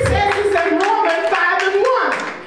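Rhythmic hand-clapping, about four claps a second, in time with a woman singing a held, stepping melody through a microphone.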